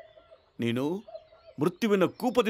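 A man's voice making one drawn, low vowel sound of about half a second that rises in pitch at the end, in a short pause between spoken lines. A faint held tone is heard before and after it.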